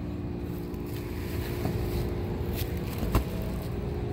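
Steady low hum of a large store's room tone, with a single thump about three seconds in.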